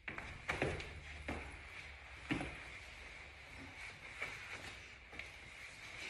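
Quiet room tone with a handful of soft thumps and shuffles, as of two people moving their feet and bodies on the floor while working through an acrobatic partner move.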